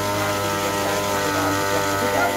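An engine running steadily at a constant speed, a level drone with many even tones, from the sanitizer-spraying rig on a pickup truck. Faint voices come and go underneath.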